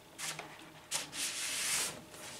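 Paper scraping and sliding as a vinyl LP in its paper sleeve is pulled out of the album jacket: a short scrape, another about a second in, then a longer slide lasting nearly a second.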